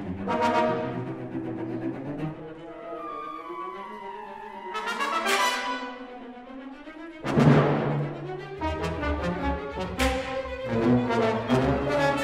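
Orchestral music with sustained chords, broken by sharp loud accents from the whole orchestra about five, seven and ten seconds in. The one about seven seconds in is the loudest.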